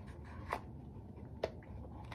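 Faint handling of a bar of soap in the hands: two light clicks about a second apart over quiet room tone.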